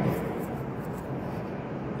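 Steady, even hiss of background noise inside a car cabin.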